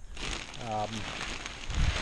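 Dry straw rustling and crackling as square bales of straw are handled, with a dull thump near the end.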